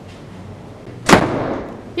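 A door banging shut once, a sharp bang about a second in that dies away quickly.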